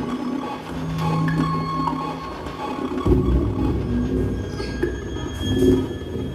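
Live electronic music: a held low bass note, then a thick, dense low layer comes in about halfway through, with thin sustained tones above it.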